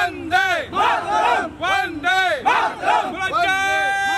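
A group of men shouting slogans together in short, rhythmic shouts, several voices at once. Near the end one long, steady note is held.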